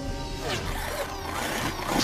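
Film-score music mixed with sci-fi action sound effects: several quick sweeping pitch glides in the second half.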